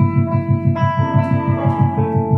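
Live band playing: electric guitars hold sustained notes over a fast, even low pulse of about eight beats a second. The guitar notes change about a second in.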